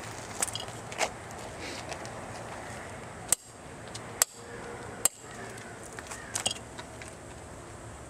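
An old spark plug being struck with a tool on asphalt to break its porcelain insulator: three sharp knocks a little under a second apart in the middle, with a few fainter taps before and after.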